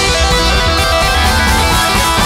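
Guitar-driven rock music playing at a loud, steady level, with a strong bass underneath.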